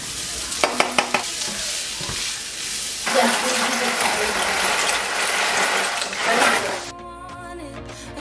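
Chopped sausage sizzling in a frying pan with onions, with a few sharp clicks as the pieces are scraped off a plastic cutting board with a knife. About three seconds in, a brighter hiss as dry penne pasta is poured into a pot of boiling water. Background music starts near the end.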